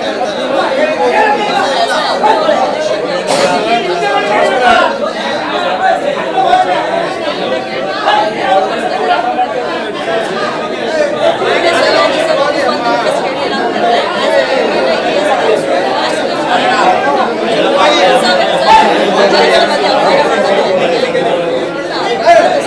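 Several people talking over one another: mixed, overlapping conversation among a seated group.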